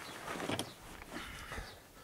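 Rustling of fabric as socks are pushed down into a rucksack, with a short click about half a second in.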